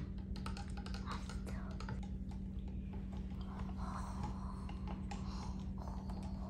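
Plastic spoon stirring sugar water in a glass flask to dissolve the sugar, clicking and scraping against the glass in a run of quick, light ticks over a steady low hum.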